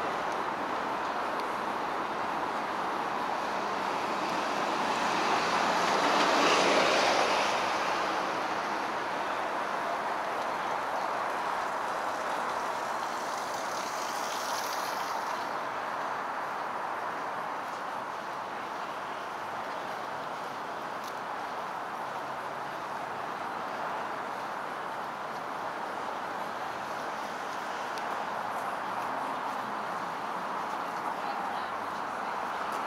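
City street traffic noise: a steady rumble that swells to its loudest about six seconds in as something passes, then settles back. A short high hiss comes in around fourteen seconds.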